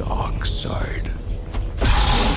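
Red crossguard lightsaber igniting, a sudden loud burst near the end, over a low musical drone.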